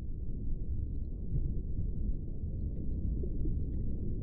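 A low, steady rumble with no clear pitch. It fades in just before and runs on evenly.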